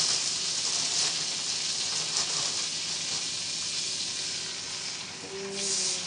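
Butter sizzling in a hot frying pan on the stove, a steady hiss.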